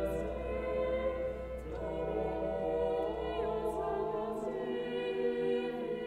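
Choir singing a Latin Missa Brevis with organ accompaniment, moving slowly between long held chords. A deep sustained organ pedal note sounds under the chords and drops out about four and a half seconds in.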